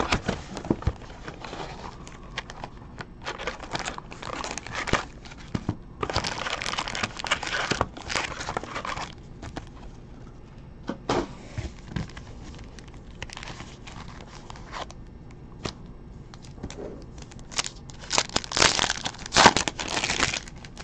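Trading-card packs in foil wrappers and a cardboard hobby box being handled: crinkling and rustling in irregular bursts, loudest near the end.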